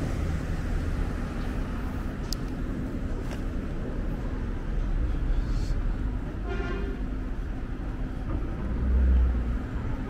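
Street traffic with a steady low rumble, and one short car-horn toot about two-thirds of the way through. The rumble swells briefly near the end.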